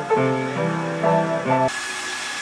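Upright piano being played, held notes and chords changing about every half second. It cuts off abruptly near the end, giving way to a steady whirring noise with a thin high whine.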